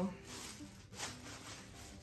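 Thin clear plastic bags crinkling softly as they are folded by hand, with a brief louder rustle about a second in.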